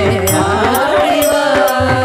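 Tamil devotional bhajan music to Lord Murugan: a melody that bends and glides in pitch, over a steady beat of percussion strokes.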